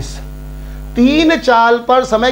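Steady electrical mains hum on the recording, with a man's voice starting to speak about a second in.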